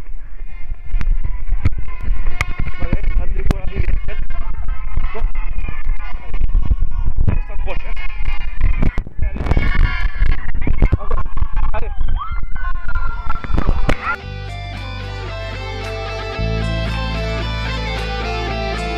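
A runner's body-worn camera in a road race picks up a loud rumble with rapid knocks from the running, with voices around. About fourteen seconds in this gives way to rock music with guitar and steady bass notes.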